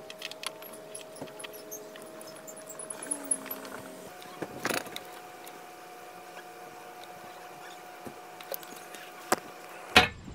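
Small clicks, clinks and rustles of hands working automotive wire: twisting stripped ends together, handling connectors and tools, and picking up a soldering iron. A few sharper clicks stand out, one about halfway and more near the end, over a faint steady hum that steps up in pitch about four seconds in.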